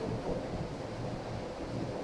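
Steady background hiss and low hum of the hall's room noise, with no clear event, in a pause between spoken phrases.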